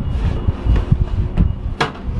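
Black plastic under-bench storage compartment in a gondola cabin being unlatched and opened by hand: a few light knocks, then one sharp click of the latch near the end. Under it runs a steady low rumble of breeze in the moving cabin.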